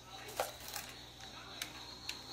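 A few light clicks and taps of a spoon against a small bowl as cannoli filling is scooped out and dropped into mini shells, over a faint steady room hum.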